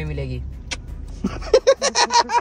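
A low steady hum inside a car, a motor or the car itself, that cuts off about one and a half seconds in, with a single sharp click a little before. Speech overlaps at the start and again near the end.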